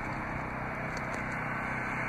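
Steady background noise with a faint low hum, even throughout; no single event stands out.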